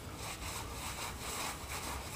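Hands being wiped clean on a cloth shop rag: a faint, soft rubbing repeated in several strokes.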